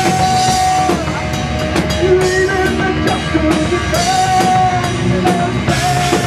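Live heavy metal band playing: distorted electric guitars and a drum kit with frequent cymbal and snare strikes, under a melody of long held notes.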